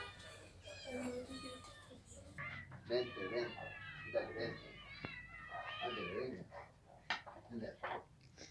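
Several house cats meowing over and over, overlapping drawn-out calls that rise and fall in pitch, as they crowd around a food dish being set down for them.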